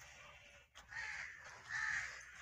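A crow cawing twice, two short harsh calls, the second louder.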